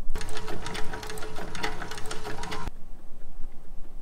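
Sewing machine stitching leather, running steadily with a rapid mechanical clatter, then stopping abruptly about two and a half seconds in.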